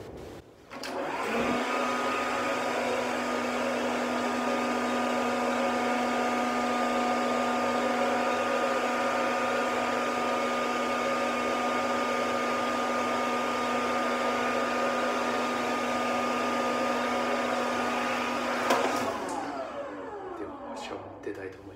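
Hair dryer on a hose running: its motor spins up with a rising whine about a second in and then runs with a steady hum. Near the end there is a click as it is switched off, and it winds down with a falling pitch.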